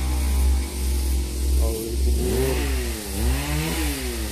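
Chainsaw engine running out of sight, its pitch rising and falling again and again from about a second and a half in as the throttle is worked during cutting.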